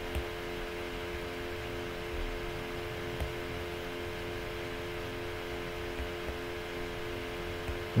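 Steady background hum of several even tones, like a fan or air-conditioning unit, with a few faint ticks: room tone.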